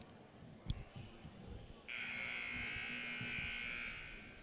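Arena scoreboard buzzer sounding a steady, harsh buzz for about two seconds, starting about two seconds in, as the game clock runs down to zero.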